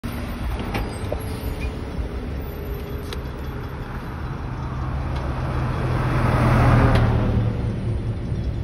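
Road traffic with cars driving past close by, the tyre and engine noise swelling to its loudest near the end as one passes.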